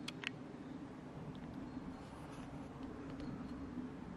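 Faint outdoor background noise with a steady low hum, and a couple of soft clicks in the first half-second.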